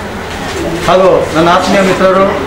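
A person speaking, the voice picking up again after a short lull lasting under a second.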